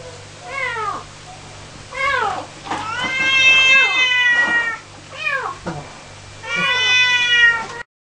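A cat meowing about five times. The short calls fall in pitch, and two of them are drawn out for more than a second.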